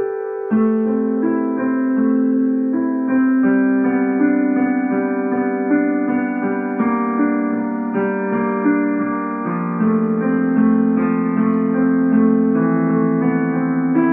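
A child playing a beginner's piano piece: a simple melody over held low notes. The low part comes in about half a second in, and the notes move at a steady, unhurried pace.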